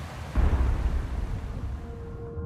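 A sudden deep boom about a third of a second in, a sound-design impact effect, dying away over the next second and a half.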